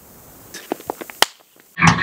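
A few small clicks and taps, the last a single sharp snap, then a brief silence before guitar music starts just before the end.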